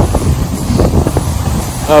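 Sitting glissade down a snowfield: a loud, rough, continuous scraping of snow under the body and boots as it slides fast downhill, with a heavy low rumble.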